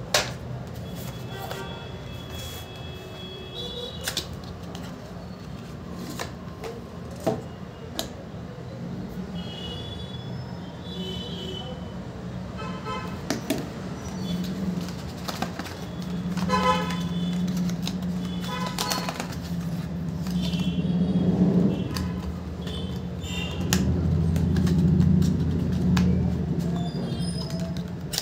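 Hands handling a cardboard phone box and its inner packaging: sharp clicks and taps of card scattered through the first half. Under them runs a steady low hum that grows louder in the second half, and short high pitched tones come and go several times.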